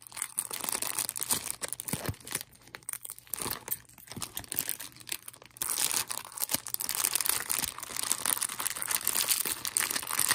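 Small plastic foil sachets crinkling as they are handled and squeezed, a crackly run of small clicks that gets denser and louder about halfway through.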